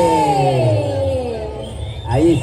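A man's voice holding one long drawn-out call that slides slowly down in pitch and fades near the end, over a steady low rumble.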